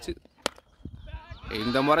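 One sharp crack of a cricket bat striking a leather ball, about half a second in, followed near the end by a man's voice.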